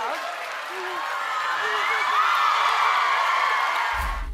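Studio audience applauding and cheering, swelling in the second half, with voices over it.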